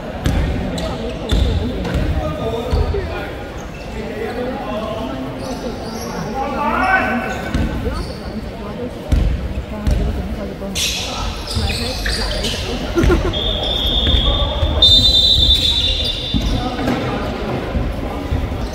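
Basketball play in a large sports hall: a ball bouncing on the hardwood court with repeated thuds, players' shoes and calls echoing around the hall. About three-quarters of the way through, a long high steady tone sounds for two to three seconds.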